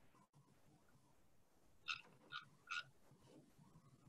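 Near silence, broken about two seconds in by three short, faint, high chirps in quick succession.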